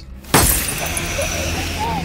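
A sudden crash of shattering and breaking, like glass, about a third of a second in after a brief hush, its debris and ringing trailing away over the next second.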